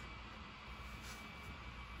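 DGLK bladeless neck fan running on its second speed setting: a faint, steady whir of moving air.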